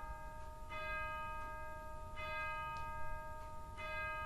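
A bell struck three times, about a second and a half apart, each stroke ringing on until the next.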